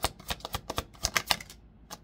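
A tarot deck being shuffled by hand: a quick, even run of card slaps, several a second, stopping about three-quarters of the way through, then a single tap near the end as a card is set down.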